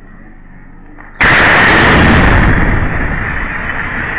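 A sudden loud explosion about a second in, followed by a long rumble that slowly dies away.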